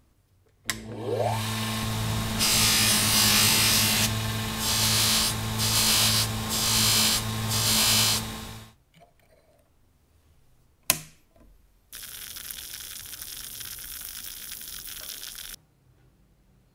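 A bench grinder's electric motor starts with a short rising whine and runs with a steady hum while a small steel part is pressed against the wheel in several spells of loud hissing grinding; it then winds down. Near the end a sharp click is followed by about four seconds of steady hissing noise.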